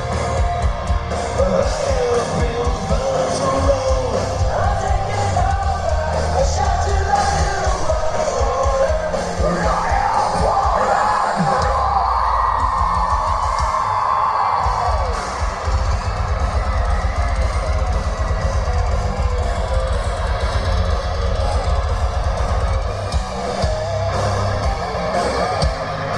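Live metal band playing: distorted electric guitars, bass and drums under a singer screaming and singing into a microphone, who holds one long note about halfway through. Heard from within the crowd.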